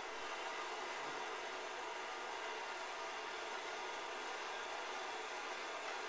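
Handheld gas torch burning with a steady, even hiss as its blue flame heats a small solid oxide fuel cell.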